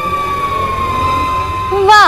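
Background music: one long held high note that sinks slowly in pitch, ending just before the two-second mark in a quick downward glide.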